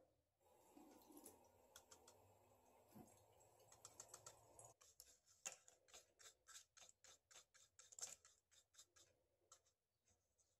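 Faint, quick clicking and tapping of a paintbrush stirring thinned paint in a small cup. The clicks are thickest in the second half.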